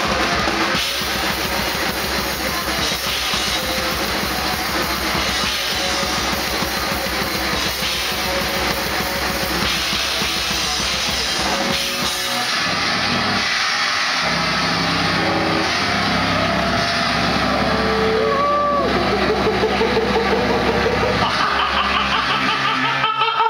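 Grindcore band playing live: fast, dense drumming under distorted guitar for about the first twelve seconds. Then the cymbals and fast beat drop away and held, distorted guitar and bass notes ring on, with bends in pitch near the end.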